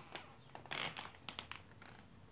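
Faint rustling and a few soft clicks of close handling as a hand reaches in to stroke a cat's head.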